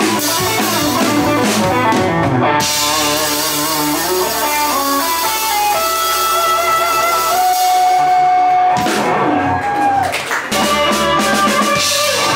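Electric guitar, a Telecaster-style guitar played live through a Boss Katana amp, with a drum kit behind it: a quick run of notes, then long held notes with vibrato, and the drums hitting harder again near the end.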